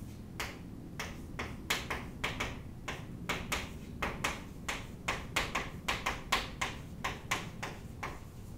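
Chalk writing on a chalkboard: an irregular run of sharp taps and clicks, a few a second, as the chalk strikes and lifts with each letter.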